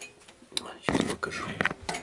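Light metallic clinks, knocks and rattles of metal parts being handled, clustered in the second half.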